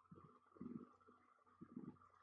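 Near silence: room tone with a few faint, brief low blips, about half a second in and again near the end.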